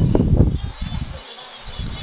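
Gusty wind buffeting the microphone, an irregular low rumble that drops out briefly a little past a second in and then picks up again. Small birds chirp faintly in the background.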